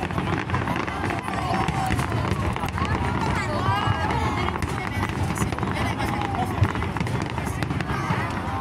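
A fireworks display going off continuously, a dense low rumble of bursting shells with scattered crackles, under the chatter of a large crowd of spectators. One sharper bang stands out about two-thirds of the way through.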